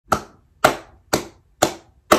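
One person slow-clapping: four sharp hand claps about half a second apart, each trailing off in a short room echo.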